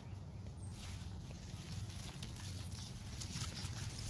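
Footsteps through grass with light, irregular rustling of the blades, over a low steady rumble.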